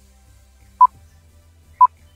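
Countdown timer sound effect: two short electronic beeps of one pitch, a second apart.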